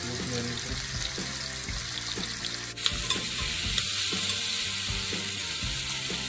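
Diced root vegetables sizzling in a hot oiled pan, with a spoon stirring and scraping against the pan. The sizzle gets louder about halfway through.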